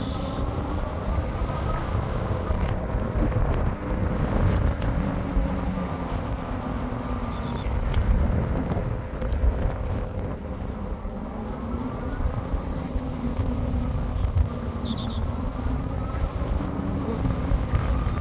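Riding noise from an e-bike on asphalt: a steady low rumble of wind on the microphone and tyres on the road, with a faint electric motor whine that slowly slides in pitch.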